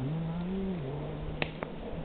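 A man's voice singing a wordless tune in long held low notes, stepping up and down in pitch, and stopping near the end. Two short clicks come about a second and a half in.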